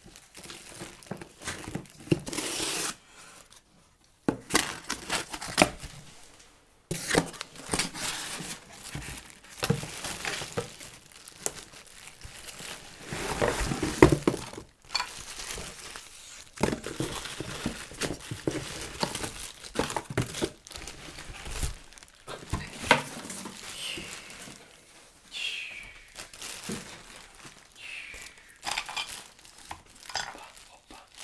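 Plastic packaging bags crinkling and rustling in gloved hands as wrapped parts are lifted out of a box. The crinkling comes in irregular bursts, with a few short pauses.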